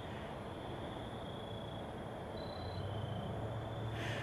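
Quiet night-time outdoor ambience: a faint, steady high trill of crickets over a low hum.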